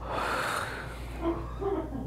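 A man's breathy exhale, followed about a second later by two short, quiet voiced sounds, like a soft murmur.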